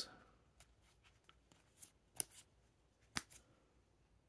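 Near silence broken by a few faint, sharp ticks and light rustles of trading cards being slid and shifted in the hand, the clearest tick a little after two seconds in and another about three seconds in.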